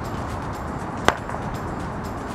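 A cricket bat striking a ball once, a single sharp crack about a second in.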